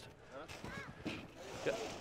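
Faint voices in the background over low outdoor noise, with no distinct sound event.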